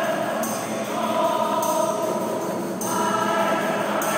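A choir of a Rocío brotherhood singing together with instruments accompanying them, in held, sustained notes.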